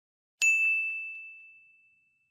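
A single bright bell-like ding sound effect, struck once about half a second in and ringing out, fading away over about a second and a half.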